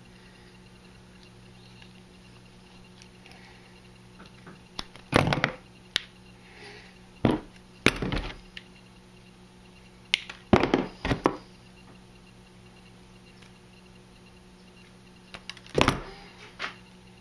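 Hand wire stripper snapping on insulated wire and tools clacking on a metal workbench: sharp clicks in small clusters, about seven in all, over a steady low hum.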